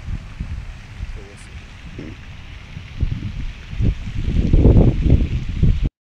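Low, irregular rumbling of wind buffeting or handling on a handheld camera's microphone outdoors, growing much louder about three seconds in, with a couple of brief voice sounds early on.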